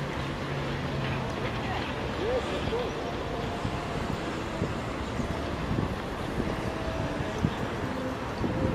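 Outdoor ambience: steady wind rumble on the microphone with faint voices of passers-by.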